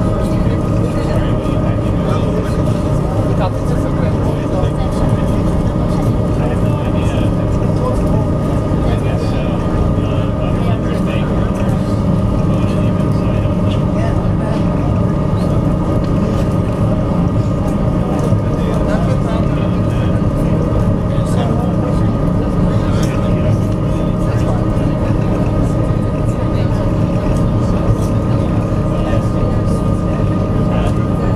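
Steady low drone of the SeaBus passenger ferry's engines under way, with a thin steady whine running through it.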